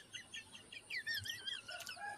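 A chicken cheeping faintly: a quick run of short, high chirps.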